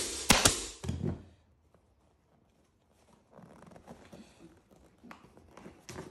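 Pneumatic upholstery staple gun firing several quick shots with a hiss of air in the first second, driving 6 mm staples through the seat cover into the plastic seat base. After a pause, faint rustling as the cover is handled.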